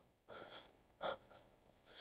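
Near silence with a faint breath and a short murmured sound from a man about a second in.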